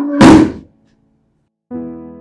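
A loud, sudden thud after a short rushing build-up cuts off soft electric-piano chords. About a second of dead silence follows before the keyboard chords come back in.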